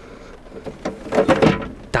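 Fold-out metal clothes-drying rack being pulled out and opened by hand: a quick series of light clicks and sliding knocks over about a second, without rattling.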